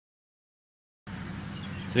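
Silence for about a second, then outdoor background sound: rapid, evenly repeated high chirping over a low, steady hum.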